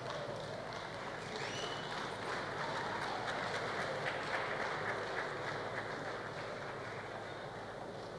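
Large indoor audience applauding steadily as it rises to its feet. A short high rising glide, such as a whistle or cry, sounds above the clapping about a second and a half in.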